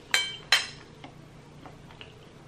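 Metal fork clinking against a ceramic bowl twice, about half a second apart, each clink ringing briefly; a few faint small clicks follow.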